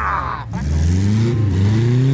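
Chevrolet Chevette's engine revving hard as the car drives across grass. The revs dip briefly about half a second in, then climb steadily as it accelerates. A shout is heard at the start.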